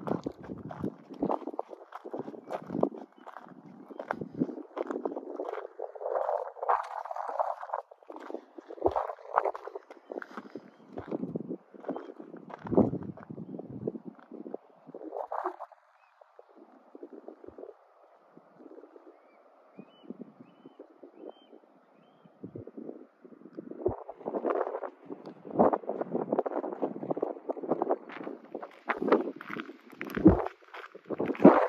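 Gusts of wind buffeting the microphone with footsteps crunching on a gravel trail, quieter for several seconds past the middle before picking up again.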